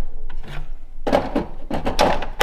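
Hard objects knocking and scraping against a wooden wall shelf as they are moved about by hand, in a string of separate clunks with rubbing between them.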